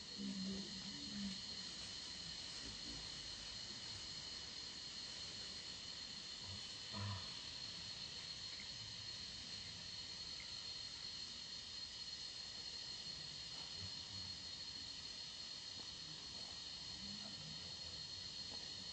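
Steady high-pitched insect drone in the woodland, with a few soft low bumps near the start and about seven seconds in.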